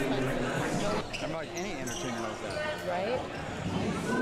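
A basketball bouncing several times on a hardwood gym floor during play, with voices from the gym behind it.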